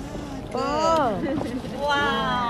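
A woman's drawn-out exclamation of delight, like "waa!", starting about half a second in and falling steeply in pitch, followed by more talking near the end.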